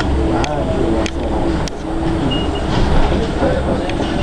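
Inside a moving Flyer trolleybus: indistinct passengers' voices over the steady low rumble of the bus running, with a few light clicks.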